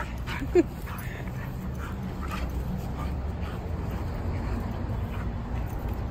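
Two dogs play-wrestling, with scuffling noises and a single short, loud yelp about half a second in. A steady low rumble runs underneath.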